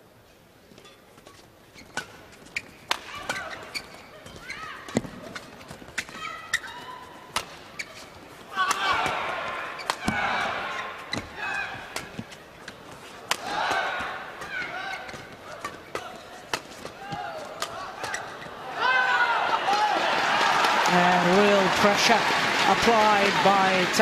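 Badminton rally in an arena: sharp racket strikes on the shuttlecock and short squeaks of shoes on the court floor. About nineteen seconds in, the point is won and the crowd breaks into loud cheering and shouting.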